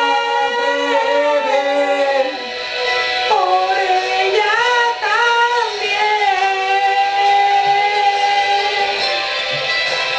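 Two male voices singing long held notes together, each note drawn out for several seconds with short pitch slides between them; the longest note holds steady from the middle to near the end.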